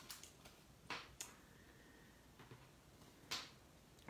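Small scissors snipping through stamped cardstock: a few faint, sharp snips, the clearest about a second in and again past three seconds.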